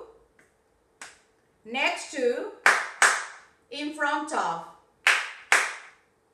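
Two pairs of sharp hand claps, the claps in each pair about half a second apart, each pair following a few short spoken words in a rhythmic drill.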